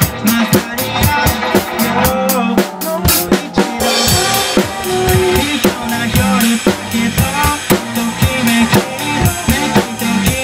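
Acoustic drum kit played along to a pop song's recorded backing track, with a steady kick-and-snare beat under the music. About four seconds in, the sound turns brighter and fuller.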